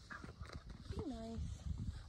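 Horses eating hay close by: irregular soft crunches and shuffles of hooves in hay and snow.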